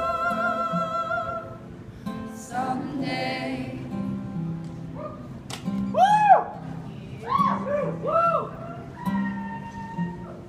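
Live acoustic folk music: a held sung note with vibrato fades about a second and a half in, then an acoustic guitar picks repeated notes under wordless vocal phrases that rise and fall in pitch.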